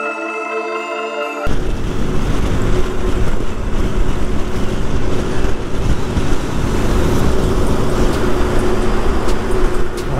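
Background music with mallet-like tones for the first second and a half, then a sudden cut to a motorcycle cruising at about 100 km/h on the highway: wind rushing over the camera microphone over a steady engine drone.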